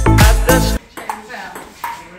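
Dance music with a heavy beat that cuts off abruptly under a second in, followed by the much quieter sound of a table tennis rally: sharp ball clicks off paddles and table, with faint voices in the room.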